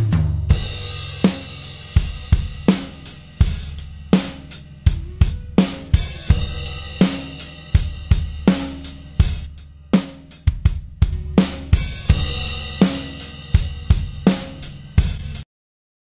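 Recorded drum kit (kick, snare, rack and floor toms, cymbals) playing a beat, with a heavily compressed and distorted parallel crush bus faded up under the dry drums over the first half. Playback stops abruptly near the end.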